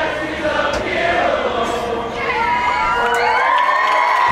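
A marching band's held chord tails off in the first half and gives way to a crowd cheering, with many shouts that rise and fall in pitch.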